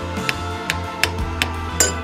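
Hammer knocking on a wooden strip held against a 3D-printed vise bending jaw, driving a brass tube into the bend: five quick sharp knocks about two or three a second, the last the sharpest with a brief ring. Background music plays underneath.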